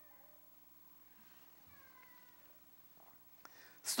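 Near-silent pause with a few faint, high, gliding voice-like calls about two seconds in.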